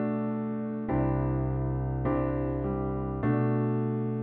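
Piano playing slow, sustained chords. A new chord is struck about a second in, again near two seconds and just past three seconds, each left to ring and fade.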